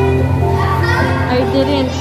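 Background music with held melodic notes over a steady bass line, with a girl's voice speaking over it.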